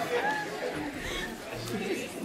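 Faint murmur of audience chatter in a room, several low voices with no clear words.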